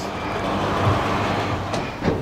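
A steady rushing noise that swells and then fades, with a sharp click near the end as the motorcycle's seat latch releases under the turned key.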